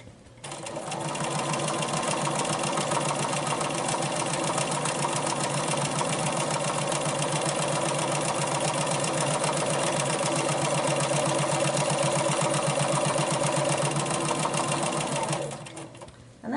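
Bernina 440 domestic sewing machine stitching fast and steadily in free-motion quilting, with the hopping foot fitted and loops being sewn. It starts and speeds up in the first second or so, runs at an even pace, and stops just before the end.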